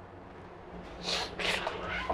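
A woman sobbing, a quick run of breathy sobs and gasps starting about a second in.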